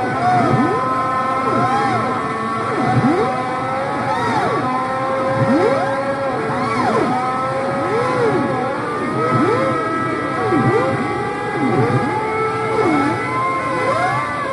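Instrumental passage of a live rock band: held notes under repeated swooping pitch glides that rise and fall about once a second, with no singing.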